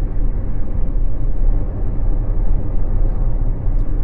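Steady low rumble inside a car's cabin, the engine and road noise picked up by a clip-on mic.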